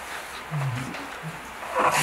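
A low voice making a brief murmured hesitation sound about half a second in, then a short breathy burst near the end just before speech resumes, over steady room hiss.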